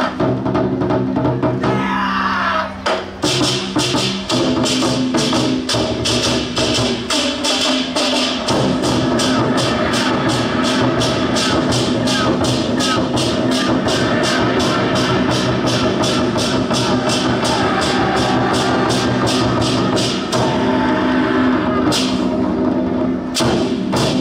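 An ensemble of large Taiwanese war drums struck together in a fast, even beat of about four strokes a second over sustained music, with a short break near the end.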